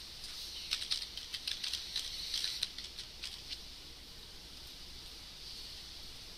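Faint computer keyboard typing: a quick run of light key clicks in the first few seconds that stops about halfway through, over a low steady hum.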